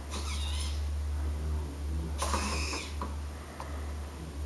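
Standard-size hobby servos driving R2-D2's holographic projector, moving it to a new random position twice. There is a brief whine just after the start and a louder one about two seconds in.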